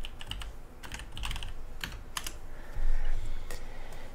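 Typing on a computer keyboard: irregular keystroke clicks as a terminal command is entered. A louder, muffled sound of about half a second comes roughly three seconds in.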